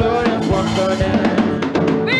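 Live gospel band playing an instrumental passage driven by a drum kit, with a quick run of drum strikes in the second half.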